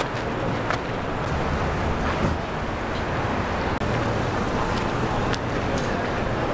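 Steady outdoor background noise with a low hum underneath and a few faint clicks, the rushing typical of wind on the microphone.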